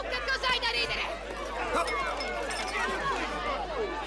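Several people shouting and yelling over one another in a brawl, with high-pitched screaming in the first second.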